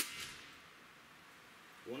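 A single shot from a Gamo Swarm Magnum Gen3i .177 break-barrel air rifle firing a 9.57-grain Hornet pellet: a sharp crack with a short ringing tail that dies away within about half a second.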